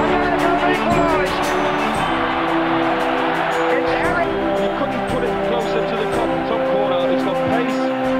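Stadium crowd roaring and cheering a goal, with long held notes sounding over the din.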